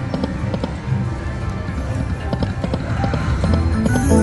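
Dancing Drums video slot machine playing its spin sounds: electronic game music with a quick, steady run of percussive clicks while the reels spin and land.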